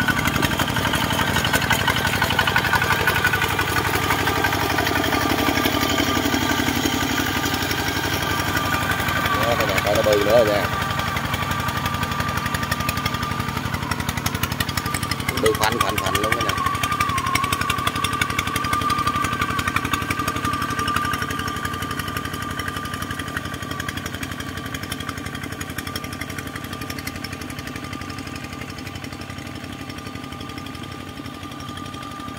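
Single-cylinder diesel engine of a two-wheel walking tractor running steadily as it drags a leveling board through paddy mud. It grows fainter over the last several seconds as the tractor moves away. Two brief wavering sounds come through about a third and halfway in.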